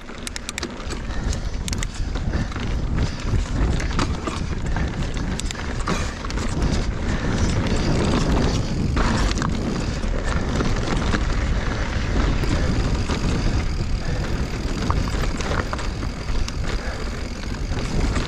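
Giant Reign 29-inch enduro mountain bike being ridden over a rocky trail: continuous tyre noise on rock and dirt with scattered clicks and rattles from the bike over bumps, under a steady low rumble.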